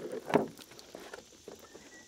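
Water running out of the slug holes in a plastic gallon jug and splashing onto grass, tailing off in the first moment, then a single short knock about a third of a second in.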